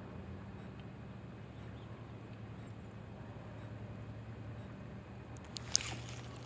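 Faint, steady low mechanical hum, with a single sharp click near the end.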